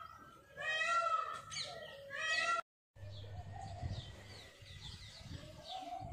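Two pitched calls with rising and falling pitch in the first half, then the sound cuts out abruptly for a moment. After the cut, faint birds chirp, in many short falling notes.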